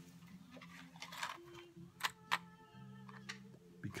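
Quiet music playing from a cassette tape, with a few sharp clicks and a short scratch from a box of matches being handled and a match struck to light a tobacco pipe.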